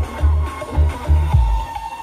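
Loud dance music played through a street DJ loudspeaker stack, with a heavy, pounding bass beat. The bass drops out briefly near the end.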